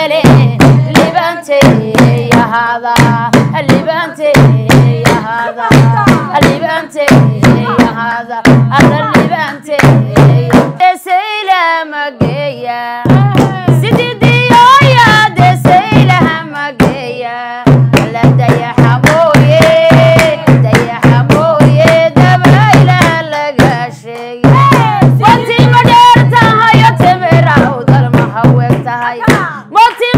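Two women singing a Somali baraanbur song over a steady drum beat with sharp hand claps. The percussion drops out for a couple of seconds about eleven seconds in while a lone voice glides, then comes back.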